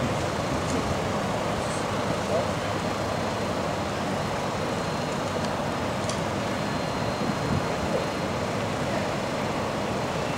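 Steady outdoor street background noise, a constant rumble and hiss with no distinct events, with faint distant voices.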